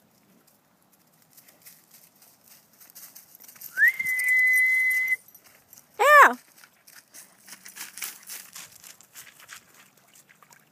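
A person's long whistle to call a dog: it glides up briefly, then holds one high steady pitch for over a second. About a second later comes a short high call that swoops up and down, and then faint rustling.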